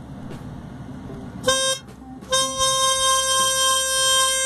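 Diatonic harmonica octave split, blow holes 3 and 6, played together. A short note about a second and a half in is followed by a long held chord, sounded to check by ear for beating between the two reeds of the octave, which is the sign of one reed being out of tune.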